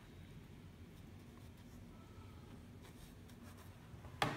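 Faint scratching of an ink brush stroking across paper, a few short strokes in the second half, over a low steady room hum.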